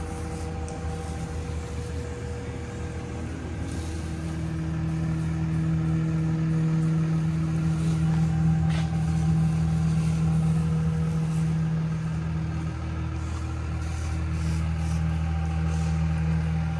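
Steady low hum of a Seal-Tech machine's blower pressurizing a travel trailer for a leak test, growing a little louder about four seconds in.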